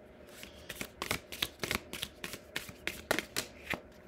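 A deck of round tarot cards being shuffled by hand: an irregular run of sharp card clicks and flicks.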